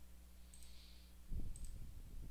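Computer mouse clicking: two faint sharp clicks about a second apart, with a low rumbling bump in the second half.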